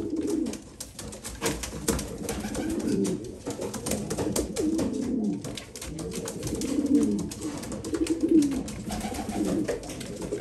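Homing pigeons cooing over and over, low falling coo phrases about once a second, the courtship cooing of a newly paired couple in a breeding cage. Sharp clicks and scuffs from the birds moving in the box are scattered through.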